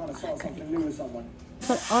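Can of compressed air hissing as it is sprayed into a ceiling smoke detector to clean it out, starting suddenly near the end.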